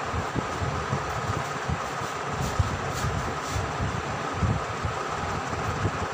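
Steady background noise: a continuous hiss with a faint steady hum and an irregular low rumble.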